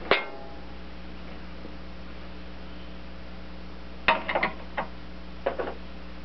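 Metal wrenches clinking against the tractor's steel frame and linkage: one sharp ringing clink just after the start, then a quick cluster of clinks and knocks about four seconds in and a few more shortly after, over a steady low hum.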